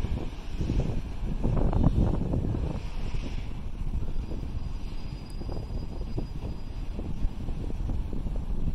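Wind buffeting the microphone outdoors: a rough, uneven low rumble that swells about two seconds in and then eases off.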